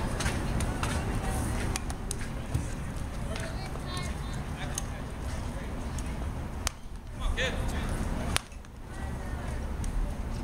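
Spectators talking at an outdoor youth baseball game over a steady low rumble, with scattered sharp clicks and knocks. The two loudest knocks come about two and a half seconds in and near the end.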